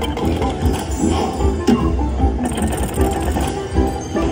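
Electronic game music from a Huff N' More Puff video slot machine, a busy run of short notes over a steady low bass.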